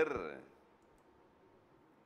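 A man's speaking voice trails off in the first half-second, then near silence with faint hiss.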